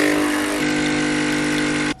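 Espresso machine running: a steady hum with a hiss over it. The pitch shifts slightly about half a second in, and the sound cuts off suddenly near the end.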